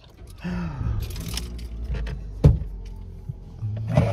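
Low, steady rumble of a car heard from inside the cabin, coming up about half a second in, with one sharp click midway. Music starts near the end.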